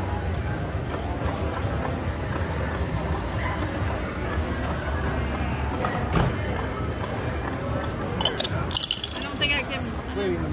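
Casino table-game ambience: a steady hum with indistinct background chatter, and a quick run of sharp clinks, like chips or cards, near the end.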